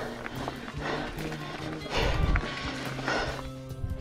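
Background music with steady held notes, over the hard breathing of a mountain biker after a climb, in puffs about once a second.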